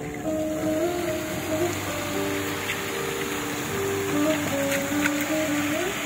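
Music from a musical fountain's loudspeakers, a slow melody of long held notes, over the steady hiss and splash of the fountain's water jets.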